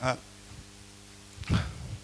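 A man's voice: one short falling syllable at the start, then a pause over a faint steady hum, and a breathy voice sound about one and a half seconds in as speech resumes.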